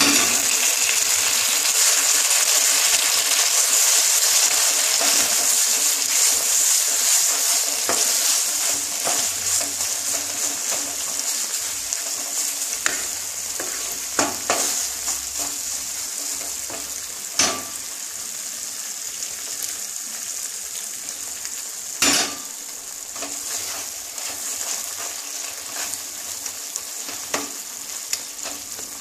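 Moong dal halwa frying in a nonstick pan and sizzling hard just after hot water has been added; the sizzle gradually eases as the water cooks off. A wooden spatula stirs through it, with a few sharp knocks against the pan.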